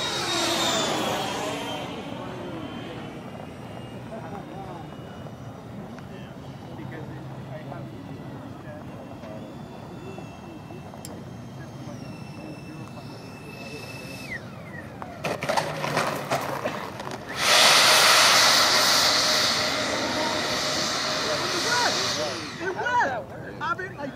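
Four electric ducted fans of a Freewing AL-37 RC airliner model whining, falling in pitch as it passes overhead at the start, then holding a steadier whine on the landing approach until they are throttled back about fourteen seconds in. A patter of clicks follows, then a loud, even rushing noise for about four seconds near the end.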